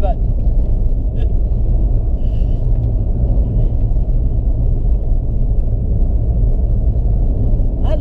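Steady low rumble of a car's engine and tyre noise on the road, heard from inside the cabin while driving.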